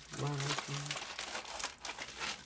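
Plastic packaging crinkling in quick irregular crackles as a hand pulls a clear plastic bag of Lego pieces out of a padded mailer.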